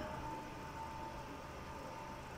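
Faint steady background hiss and low hum of the recording, with a thin steady tone running through it: room tone with no other sound.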